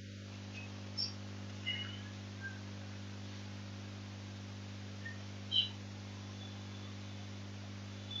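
Steady low electrical hum of background room tone, with a few faint short high chirps, the strongest about five and a half seconds in.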